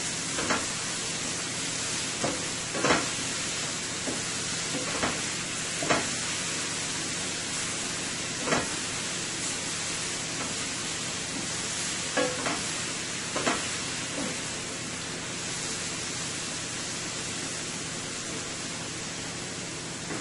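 Sliced carrots and onion sizzling steadily in a stainless-steel skillet on high heat, with a wooden spatula knocking and scraping against the pan as the vegetables are tossed. The stirring strokes come every second or two through the first part, then grow sparse under the steady sizzle.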